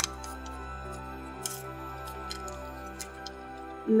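Soft background music of held, sustained tones, with a few faint crinkles and clicks of origami paper being handled and a short paper rustle about a second and a half in.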